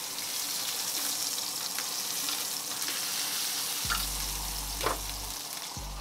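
Ribeye steak frying in a pan, a steady sizzle. A low hum comes in about four seconds in.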